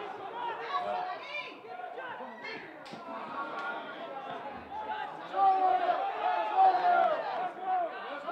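Voices shouting and calling at a football match. The shouts grow louder and more drawn out about five seconds in. There is one brief knock partway through.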